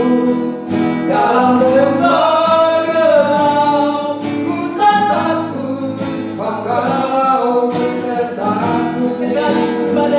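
A woman and a man singing a slow worship song together, accompanied by a strummed acoustic guitar, in long held phrases with short breaths between them.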